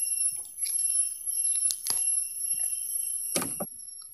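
Steady high-pitched whine of insects in the mangroves, held on several pitches at once, with two sharp knocks about two seconds and three and a half seconds in, the second the louder.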